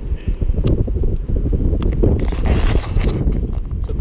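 Wind buffeting a small camera microphone: a loud, uneven low rumble, with a few sharp knocks or clicks along the way.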